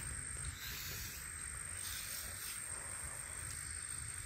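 Quiet outdoor background with a thin, steady high-pitched tone. A Furminator deshedding tool makes a few faint, soft brushing strokes through a German Shepherd's coat, pulling out loose undercoat.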